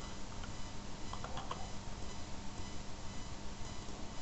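Quiet room tone of a desk microphone: steady hiss with a faint electrical hum, and a few faint clicks a little over a second in.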